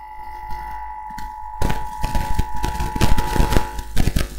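Handling noise on a podium microphone heard through the PA: a quiet steady hum, then from about one and a half seconds in a dense run of bumps and knocks.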